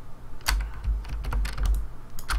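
Computer keyboard keys clicking: a string of separate keystrokes, about six or seven in two seconds, over a low hum.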